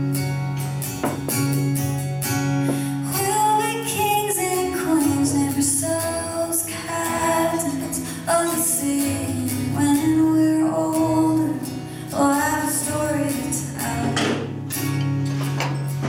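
A woman singing live to a strummed guitar. The strumming runs alone for the first few seconds, then her voice comes in with the melody.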